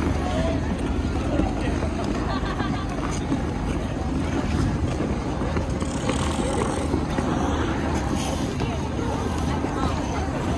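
Busy outdoor ice rink: steady scraping and hissing of many skate blades on the ice, mixed with the indistinct chatter of the skaters.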